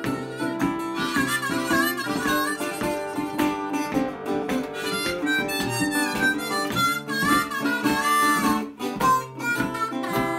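Harmonica solo in acoustic blues, the harp's notes bending up and down, over a fingerpicked resonator guitar.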